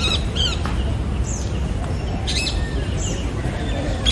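Birds calling with short, high, falling chirps several times, over a steady low rumble.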